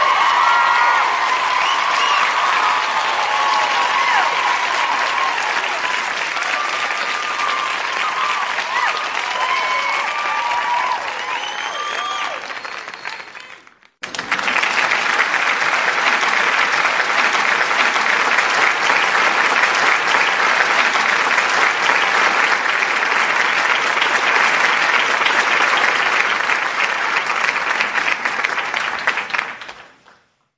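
Crowd applause with cheering voices over it, fading out about 13 seconds in. After a short break a second round of applause starts suddenly and fades out at the end.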